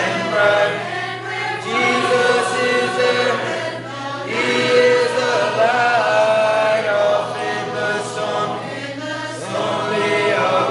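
Church congregation singing a hymn together a cappella, many voices in harmony.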